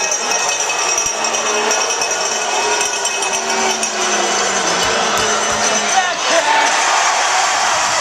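Ice hockey arena crowd: many overlapping voices chattering and calling out, with a few dull knocks around the middle.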